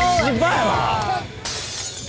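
Glass-shattering sound effect added in the edit, coming in suddenly about one and a half seconds in and crackling on briefly.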